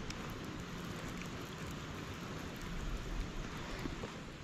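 Wind buffeting the microphone: a steady hiss with gusty low rumble, strongest around three seconds in, and a few faint ticks.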